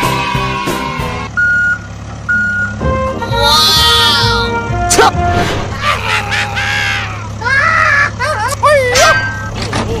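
Added soundtrack of a vehicle's reversing beep sounding twice, about a second apart, over a steady low engine hum, with wavering, squeaky cartoon-like voice sounds in the second half. Music plays for about the first second.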